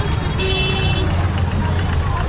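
Congested street traffic: a vehicle engine running close by with a steady low rumble, and a horn sounding once for about half a second shortly after the start.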